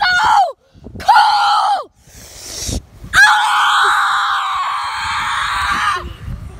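A young boy screaming at a high pitch: two short screams in the first two seconds, then one long scream from about three seconds in.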